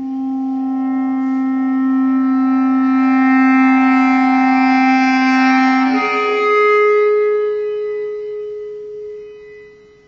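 Bass clarinet holding a long, swelling low note, then moving up to a higher held note about six seconds in, which fades away near the end.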